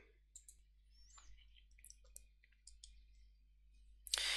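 Near silence, broken by a few faint, scattered clicks and ticks.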